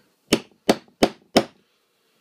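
Hammer striking a small steel hollow leather punch four times, about three blows a second, driving it through a piece of leather to knock a hole.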